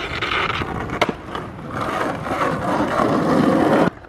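A rough, rolling scrape-like noise that grows louder and stops abruptly near the end, with a sharp click about a second in.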